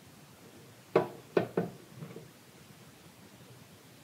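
Three sharp knocks close together about a second in, then a fainter one: a glass bowl of bread flour knocked against the bread machine's pan as the flour is tipped in.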